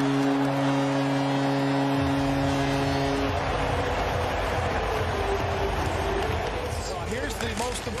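Arena goal horn sounding, a chord of steady held tones, over a cheering crowd after a home goal. The horn stops about three seconds in while the crowd noise carries on.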